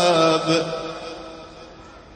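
A man's voice chanting Qur'an recitation in melodic tajwid style, holding a long note that dips slightly and ends about half a second in. Its reverberation then dies away over the following second.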